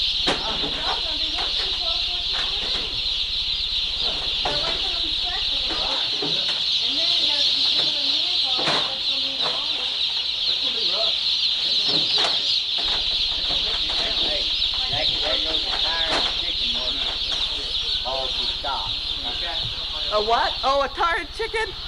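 Dense, continuous peeping of a large flock of baby chicks, hundreds of high calls blending into one steady chorus.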